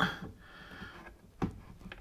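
Two brief knocks as hands grip and strain at a bath tap's connector nut, wedged in against the pipework behind the bath: one right at the start, one about a second and a half in, with little else in between.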